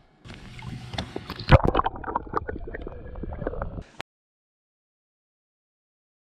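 Water splashing and gurgling with scattered knocks, a loud splash about one and a half seconds in; the sound cuts off suddenly about four seconds in, followed by silence.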